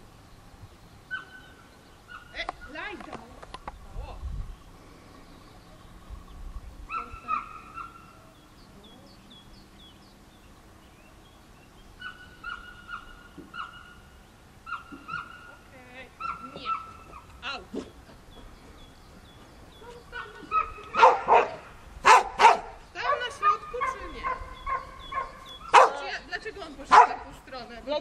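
A dog whining in short high-pitched clusters, then barking loudly several times in the last seven seconds.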